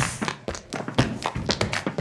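A quick run of light taps and knocks, several a second, like tapped hand percussion in a soundtrack.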